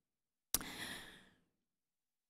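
A single breath taken at a lectern microphone about half a second in, starting suddenly and fading out within a second.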